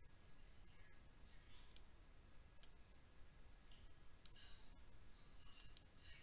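Faint, scattered clicks of a computer mouse and keyboard while a spreadsheet cell is edited, a handful spread irregularly over several seconds against near silence.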